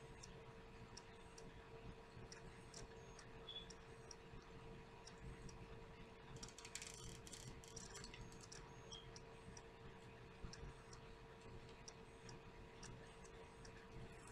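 Near silence: room tone with a steady faint hum and faint ticking about once a second, and a brief soft rustle about halfway through.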